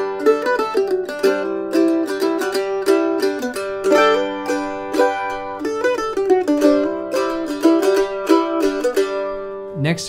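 Two A-style mandolins strumming open chords back to back, the Kentucky KM 150 and then the Eastman MD 305. Both are strung with the same phosphor bronze strings and played with the same pick. The chords stop just before the end.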